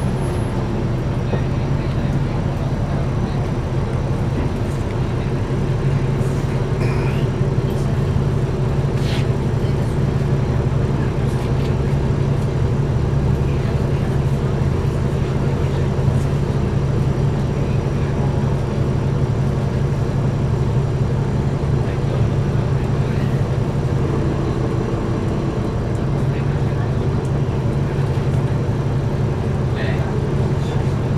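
Cabin of a 2009 NABI 416.15 transit bus, heard from near the back: the diesel engine's steady low drone, with light rattles from the interior. For most of it the bus is stopped at a red light, so the engine is idling.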